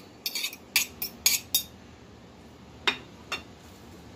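Metal utensils clinking against a ceramic mixing bowl: a quick run of about six clinks in the first second and a half, then two more near the end.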